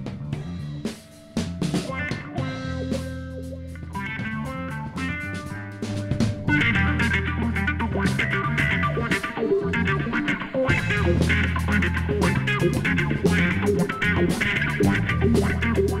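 Live band playing an instrumental rock groove: bass guitar notes, electric guitar and drum kit. The band grows fuller and louder about six and a half seconds in.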